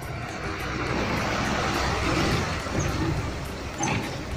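A bus driving through shallow floodwater on the road, its engine running as its wheels throw up a rush of spray. The sound swells to its loudest about a second in as the bus draws close.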